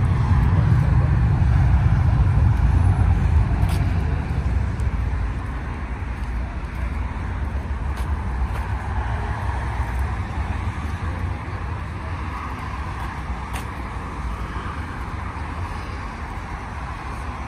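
Low rumble of car and road traffic, loudest in the first few seconds and then slowly fading, with faint voices in the background.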